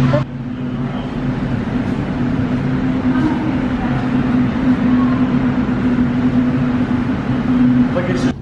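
A steady low mechanical drone with a constant hum, like a large machine or ventilation running, with faint voices in the background.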